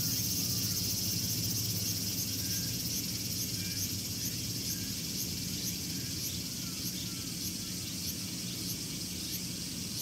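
Cicadas singing: a shrill, high buzz that settles into a regular pulsing of about one to two pulses a second. A low steady hum runs underneath.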